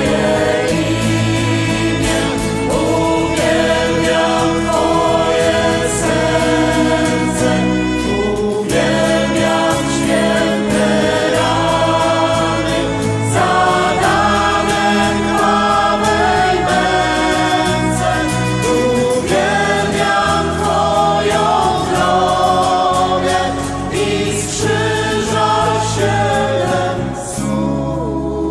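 Christian worship song sung by a choir, with sustained chords over a steady bass line.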